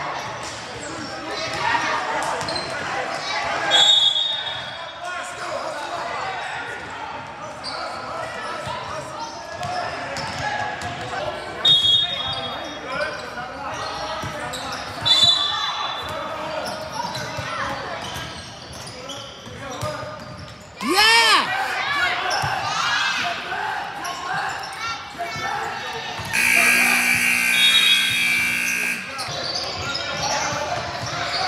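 Indoor basketball game: the ball bouncing, short high sneaker squeaks on the hardwood floor, and indistinct voices of players and spectators echoing in the gym. A loud shout rings out about two-thirds of the way through, and near the end a loud steady buzzer sounds for about two and a half seconds.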